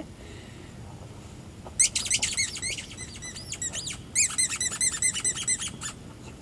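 A squeaky dog toy being squeezed over and over, as when a puppy chomps on it: high squeaks several times a second in two runs, starting about two seconds in, with a brief break about four seconds in.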